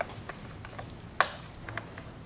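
A few faint clicks and one sharper plastic click about a second in, as the motorcycle's flasher relay is worked out of its rubber keeper clip by hand.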